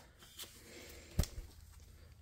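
Quiet handling of paper money and a laminated card on a desk, with one sharp click about a second in.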